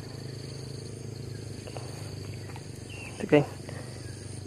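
Steady outdoor background of a low rumble with a thin, high, faintly pulsing insect drone above it, and a short voice sound about three seconds in.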